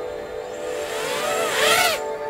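FPV quadcopter's brushless motors whining at idle, then throttled up for lift-off in a rising and falling whine that grows louder near the end.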